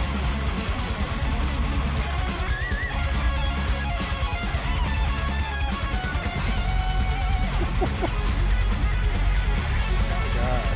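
Heavy metal music with shredding electric lead guitar: fast lines and wavering, vibrato-bent held notes over a steady, heavy bass and drums.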